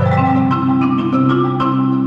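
Solo concert marimba played with mallets: a quick, dense stream of struck notes in the upper bars over low bass notes kept ringing by fast repeated strokes.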